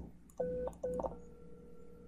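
Softphone call tones: two short beeps, then, about a second in, a steady telephone tone that carries on as the call rings through.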